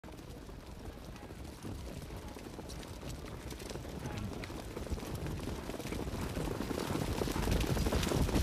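Hoofbeats of a field of harness pacers and their sulkies over a low rumble, growing steadily louder as the field approaches the start.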